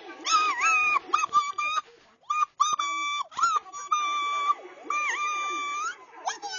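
A string of high-pitched squeaky cartoon-style calls, some short and some held up to about a second, dipping and bending in pitch; the last one rises at the end.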